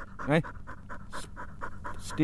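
Springer spaniel panting steadily, about five quick breaths a second.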